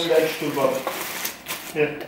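Plastic grocery packaging rustling and crinkling, with a few light clicks, as items are lifted out of a shopping bag, under a woman's broken speech.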